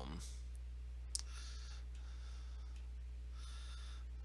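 A single computer-mouse click about a second in, over a steady low hum, with soft breaths into the microphone.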